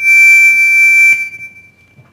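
Microphone feedback through the public-address system: a loud, steady, high-pitched squeal that swells up, holds for about a second, then fades out.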